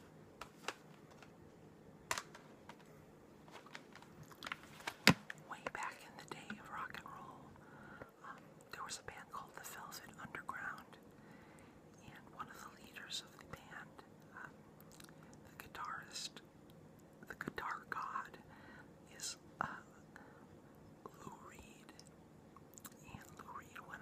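Soft whispering broken by wet mouth clicks and smacks, with a sharp click about five seconds in standing out as the loudest sound.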